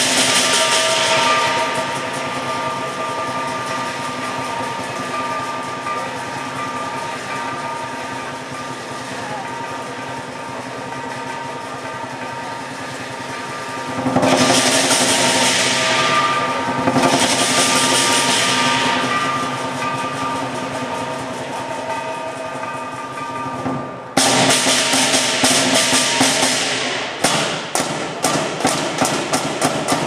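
Lion dance percussion of drum, cymbals and gong accompanying a lion on poles. Through the middle there is a quieter ringing, with two loud cymbal washes about fourteen and seventeen seconds in, and from about twenty-four seconds the strikes come thick and quicken towards the end.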